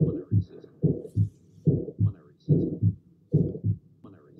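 Heart sounds heard through a stethoscope, about 70 beats a minute: each beat is a pair of thumps, with a murmur filling the gap between the first and second sound. This is the systolic ejection murmur of aortic valve stenosis.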